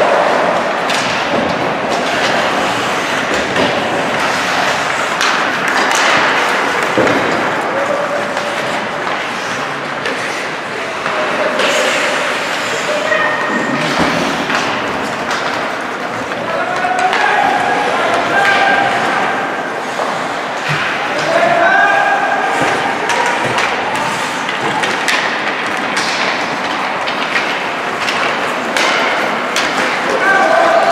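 Ice hockey play in an indoor rink: skates scraping the ice, with sharp clacks and thuds of sticks, puck and boards scattered throughout. Players' and onlookers' voices call out several times over it.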